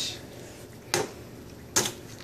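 Two short, sharp knocks, a little under a second apart.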